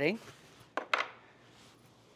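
Two light clicks of cutlery against a dish, close together about a second in, then quiet room tone.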